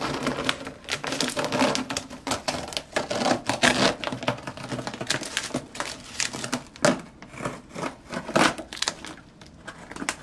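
Green masking tape being peeled off a plastic model ship's deck and crumpled in the hands: a dense, irregular crackling and crinkling that eases off near the end.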